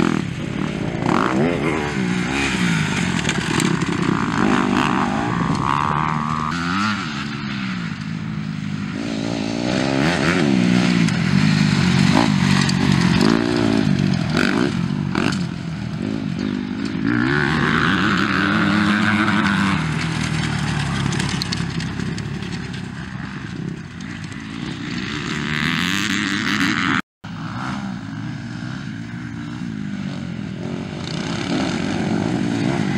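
Dirt bike engines revving, their pitch rising and falling repeatedly as riders accelerate and shift along the track, with more than one bike at times. The sound cuts out for a moment near the end.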